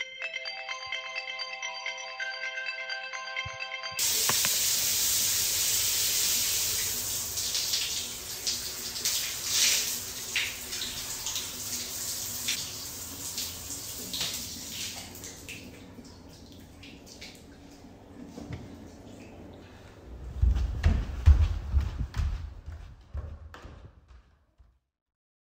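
Film soundtrack: a few seconds of steady held tones, then water running as from a tap, starting suddenly and fading slowly, with a few heavy low thumps near the end.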